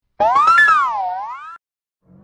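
A short animated-logo sound effect: one pitched, ringing tone that starts a moment in, its pitch wavering up and down in a slow wave as it fades, then cuts off suddenly about a second and a half in.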